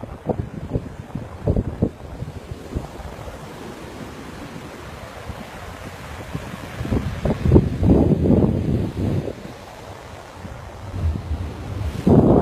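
Sea surf washing on a beach, mixed with wind buffeting the microphone; it swells louder for a couple of seconds about seven seconds in, then eases.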